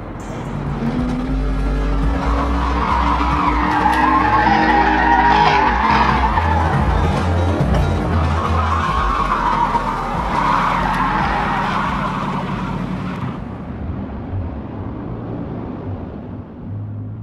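Car tyres screeching in a long skid, with the engine revving, over a music track's bass. The screech swells twice and dies away after about thirteen seconds.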